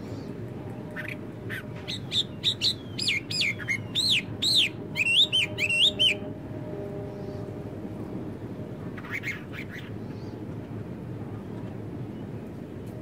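A songbird singing a quick run of loud whistled notes that sweep up and down, lasting about five seconds, then a few fainter calls later, over a steady low background rumble.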